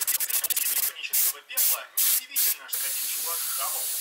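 Sandpaper rubbing over a painted helmet in quick strokes, then several short hisses of a compressed-air paint sprayer and, from near three seconds in, a steady spray hiss.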